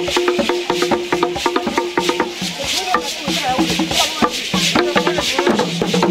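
Live Bamiléké Kougang dance music: rapid shaker rattles and sharp knocking percussion strikes, with voices holding long, steady notes over them.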